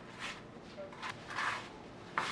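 Hands rubbing and crumbling a damp flour-and-sugar mixture into crumbs on a mat: a few soft, faint rustles.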